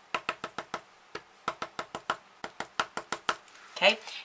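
Pencil eraser tapping quickly on paper, stamping dots of ink, about five light taps a second with brief pauses.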